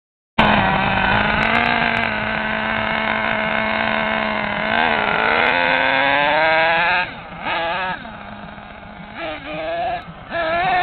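Mad Beast RC truck's engine starts suddenly and runs at a steady high pitch, then revs higher over a couple of seconds before dropping off and surging unevenly and more quietly. The truck is running in first gear only, its second gear melted.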